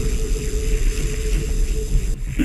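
Melodic techno track: a sustained synth note held over a deep, droning bass.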